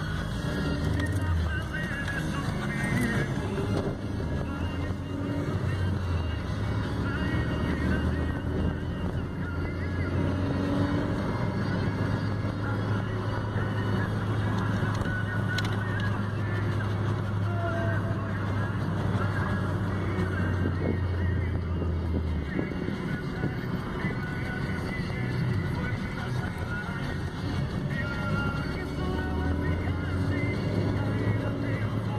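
A moving car heard from inside the cabin: steady road and engine noise with a low drone that stops about two-thirds of the way through.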